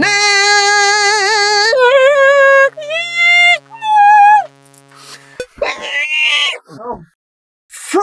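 A man's voice singing four held notes that step upward, each with a heavy, wavering vibrato, over a sustained synthesizer drone that cuts off about five seconds in.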